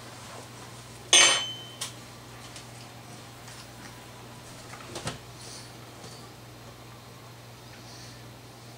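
A metal spoon clinks down on a hard surface about a second in, ringing briefly, followed by a lighter tick and, near the five-second mark, another softer knock.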